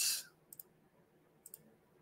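Two quiet double clicks about a second apart, computer mouse clicks as the livestream is being ended.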